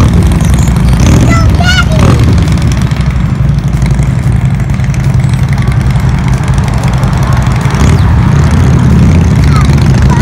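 Cruiser motorcycle engines running and rumbling as the bikes ride past and through an intersection, with traffic noise behind them. A brief high warbling sound comes about a second in.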